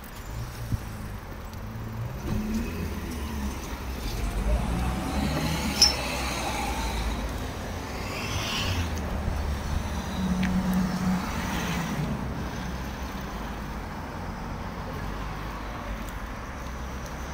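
Road traffic: cars passing, with a low engine rumble that swells through the middle and fades again. There is a sharp click about six seconds in.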